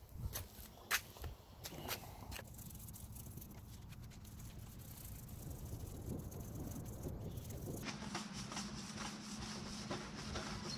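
A few knocks and bumps in the first two seconds from a handheld camera being moved, then faint outdoor ambience. About eight seconds in, a steady low hum with light ticks comes in.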